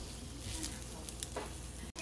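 Breaded zucchini strips frying in a little oil on a nonstick griddle, sizzling softly, with a few light clicks of the turner against the pan. The sound drops out abruptly just before the end.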